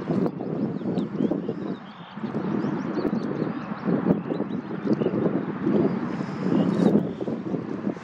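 Wind buffeting the microphone in irregular gusts, a loud low rumble that swells and dips.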